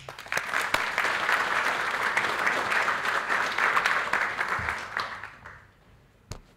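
Conference audience applauding, a steady patter of clapping that fades away after about five seconds.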